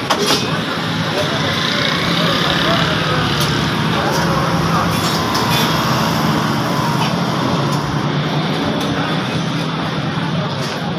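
Busy roadside market noise: a steady hum of traffic and engines running, with people talking.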